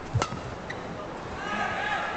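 A badminton racket strikes the shuttlecock with one sharp crack about a fifth of a second in, over low thuds of the players' footwork on the court. Near the end, arena crowd voices rise and grow louder.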